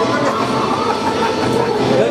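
Bulgarian folk dance music: a gliding melody line over a dense, steady accompaniment.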